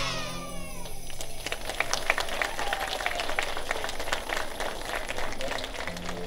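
A song ends with a high, falling vocal glide, then audience applause, many irregular claps from about a second and a half in.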